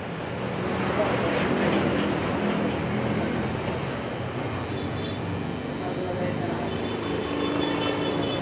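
Electric hair clipper running with a steady buzz.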